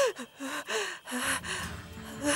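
A woman gasping in fear: a short rising-and-falling cry at the start, then several quick, shaky breathy gasps.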